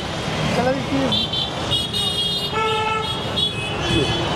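Street traffic with vehicle horns honking: several short horn blasts, one after another, over the steady noise of engines.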